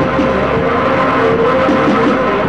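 Loud experimental noise music played live: a dense, unbroken wall of harsh noise with steady droning tones running through it and a wavering pitch in the middle.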